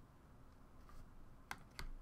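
Two sharp clicks of hard plastic about a third of a second apart, past the middle: clear plastic card holders being set down and knocking on a tabletop. Otherwise faint room tone.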